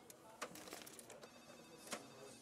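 Quiet office background: a faint telephone ringing, with a few soft clicks, the most distinct about half a second in and just before the end.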